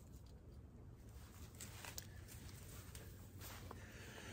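Near silence, with faint rustling and a couple of soft clicks as a synthetic rope is handled and loosened through a rope tackle.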